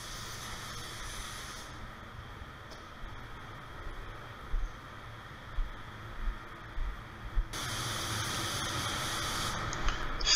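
Paint spray gun hissing as it lays base coat, the trigger released about two seconds in and pulled again for another pass near the end. A few short low knocks come in the pause between the passes.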